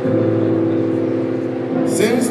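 Held keyboard chords on a Roland stage keyboard, a new chord struck at the start and another near the end, ringing on steadily between.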